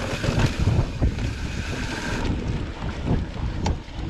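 Wind buffeting the microphone of a bike-mounted camera, over the rumble of a mountain bike rolling along a dirt trail, with short knocks and rattles from bumps in the ground. A brighter hiss in the first couple of seconds dies away.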